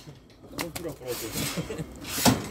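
Domestic racing pigeons cooing and scuffling in a loft's landing trap: short low coos repeating, with a couple of sharp knocks about half a second in.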